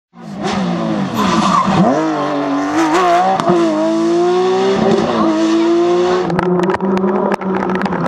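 Porsche 911 rally car's flat-six engine dropping in pitch as it slows for a corner, then pulling away hard, its pitch climbing through two upshifts. About six seconds in, the sound changes to a different rally car's engine with a string of sharp clicks.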